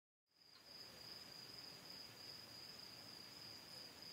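Faint evening forest ambience: after a moment of dead silence, a steady high-pitched insect trill comes in and holds on one pitch.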